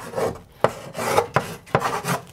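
Chalk writing on a chalkboard: scratchy strokes broken by several sharp taps of the chalk against the board.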